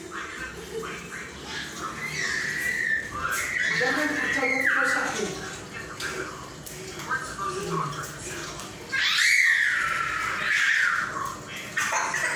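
Young goat kid bleating: a run of calls from about two to five seconds in, and another loud call about nine seconds in.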